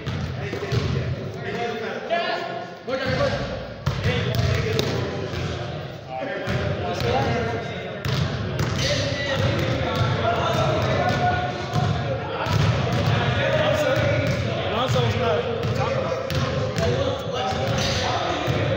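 A basketball being dribbled and bouncing on a gym floor during play, with indistinct players' voices, all echoing in a large hall.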